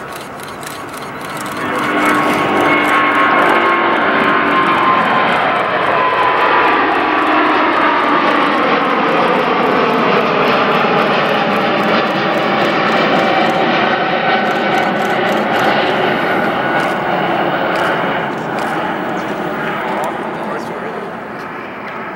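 Rolls-Royce Trent XWB jet engines of an Airbus A350 at takeoff thrust as the airliner lifts off and climbs away. The roar swells about two seconds in, holds loud, and eases off over the last few seconds, with tones gliding downward in pitch as the jet passes.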